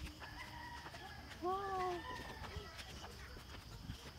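A distant rooster crowing faintly, a long drawn-out call, with a girl's exclaimed "Wow!" over it about a second and a half in.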